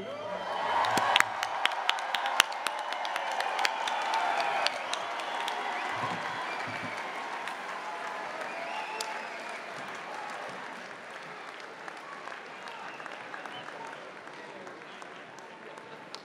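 Audience applause, loudest in the first few seconds and then gradually dying down.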